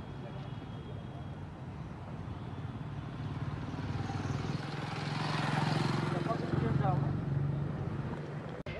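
A motor vehicle's engine running nearby, growing louder from about three seconds in to a peak around six seconds, then easing off.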